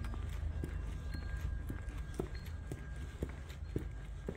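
Footsteps on a concrete walkway, about two steps a second, over a steady low rumble.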